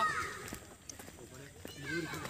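A woman's high-pitched voice gives a brief exclamation that falls in pitch right at the start. Then it is quiet apart from a few faint clicks, and her voice comes back near the end.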